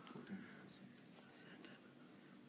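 Near silence, with faint, low murmuring voices in the room.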